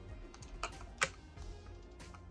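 A few light clicks of a makeup container being handled, two of them sharper near the middle, over faint background music.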